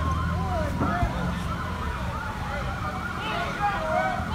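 Ambulance siren sounding a fast up-and-down yelp, with a single sharp thump about a second in.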